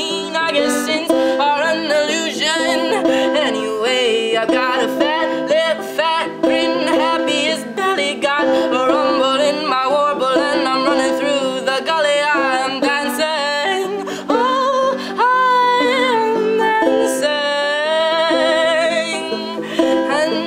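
Banjo picked in a steady acoustic folk accompaniment, with a wordless singing voice wavering over it, stronger in the second half.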